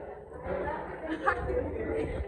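Speech: a few spoken words over the chatter of other people talking.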